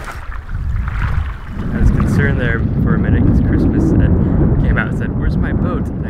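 Wind buffeting the microphone: a heavy, gusting low rumble that builds over the first two seconds and stays strong, with brief snatches of voice over it.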